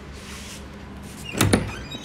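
A wooden door being handled and pulled open: one short scrape and knock about one and a half seconds in.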